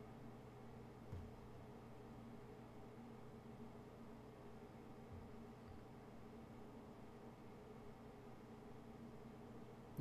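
Near silence: faint steady low hum of room tone, with one small click about a second in.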